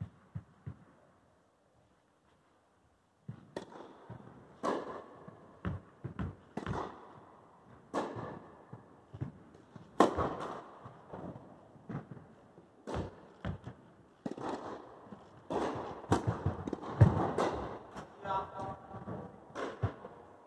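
Tennis balls struck by rackets and bouncing on the court in a rally, a string of sharp pops with a ringing echo of a large hall. A hard serve strike comes about ten seconds in, and a short voice is heard near the end.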